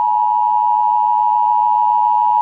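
Emergency Broadcast System attention signal: a steady, loud dual tone of two close pitches just under 1 kHz, held unbroken.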